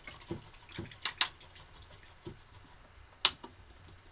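A few scattered light clicks and taps from painting supplies being handled, such as a brush and watercolour palette. The loudest comes about a second in and another a little after three seconds.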